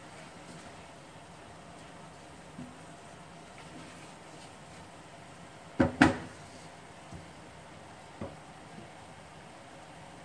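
Stirring in a metal saucepan of braising catfish, with two sharp knocks close together about six seconds in and a few lighter taps of utensils against the pot.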